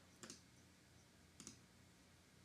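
Two faint computer mouse clicks, about a second apart, over near silence.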